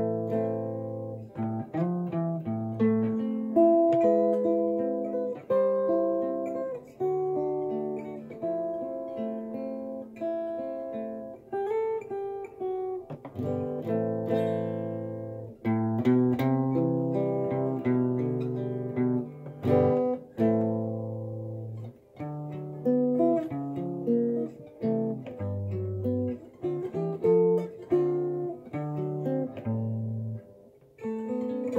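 Hollow-body archtop guitar fingerpicked with plastic Fred Kelly Freedom finger picks worn over the fingernails, playing plucked chords and single-note lines over bass notes.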